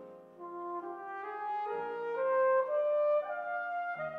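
A brass instrument playing a slow, sustained melody that climbs in pitch note by note, loudest a little past the middle, with piano accompaniment underneath.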